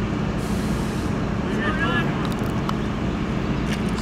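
Heavy truck engine idling steadily, with a short hiss of air brakes about half a second in.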